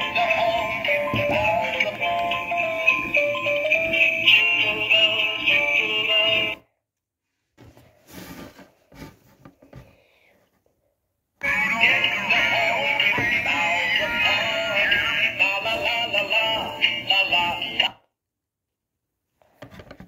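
Animated Christmas toys playing their recorded Christmas song with tinny electronic singing, in two runs of about six and a half seconds each with a gap of several seconds between. The gap holds faint clicks and knocks.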